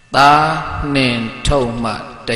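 A Buddhist monk's voice over a microphone, preaching in a drawn-out, chant-like delivery that starts just after a short pause.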